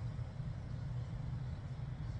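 Quiet, steady low rumble of outdoor background noise, with no distinct events.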